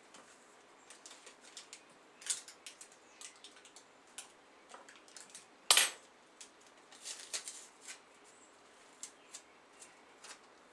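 Paper and packaging handled at a table: scattered rustles and small clicks, with one louder crackle just before six seconds in.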